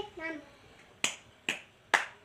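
A young girl clapping her small hands in a steady beat: three sharp claps about half a second apart, starting about a second in. A brief word in the child's voice comes just before the claps.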